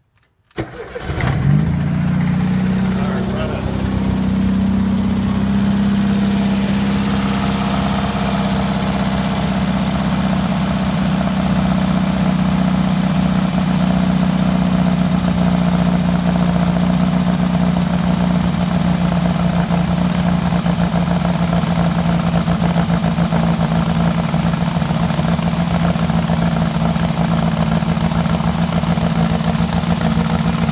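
1972 VW Baja Beetle's air-cooled flat-four engine starting from cold, catching within about a second, then running at a steady fast idle on the choke.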